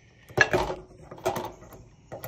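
Pneumatic pop rivet gun setting pop rivets through an aluminium gutter and its downspout outlet flange: two sharp metallic clacks about a second apart, the first the louder.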